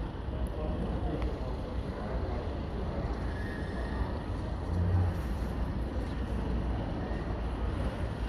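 Outdoor street background: a steady low rumble with a slightly louder swell about five seconds in, and faint distant voices.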